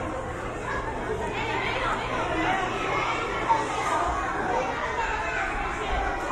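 Overlapping chatter of many voices, echoing in a large hall, with one brief knock about halfway through.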